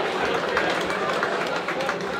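Football crowd in the stands reacting to a chance at goal: many voices at once with scattered hand-clapping.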